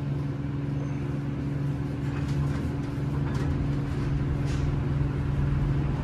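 Elevator car doors sliding shut over a steady low hum, with faint ticks about once a second.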